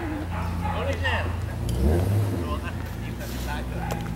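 A steady low engine hum runs throughout, with indistinct voices talking over it.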